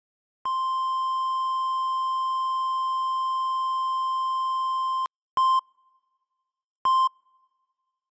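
Hospital heart monitor sounding a long unbroken tone, a flatline, for about four and a half seconds. Then two short beeps follow about a second and a half apart, the sign of the heartbeat returning.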